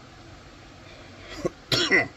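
A man coughs once, briefly, near the end, after a stretch of quiet room tone.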